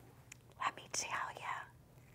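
A woman's soft, breathy whisper: a few unvoiced syllables between about half a second and a second and a half in.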